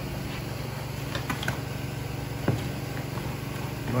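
A cardboard box being opened and a framing nailer lifted out of it: a few short rustles and clicks, and one sharp knock about two and a half seconds in. A steady low mechanical hum runs underneath.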